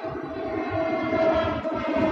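A long, steady horn-like tone with several overtones, slowly growing louder, over a low, uneven rumble.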